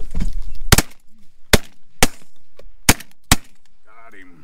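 Five shotgun shots from several hunters firing at a flock of decoying ducks, unevenly spaced over about two and a half seconds.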